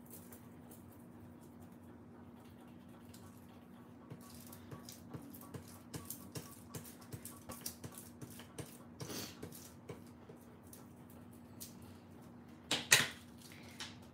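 Bone folder rubbing back and forth over a sheet of craft foil: a run of short, soft scraping strokes, the foil being burnished onto glue, with one louder sharp scrape near the end. A faint steady hum sits underneath.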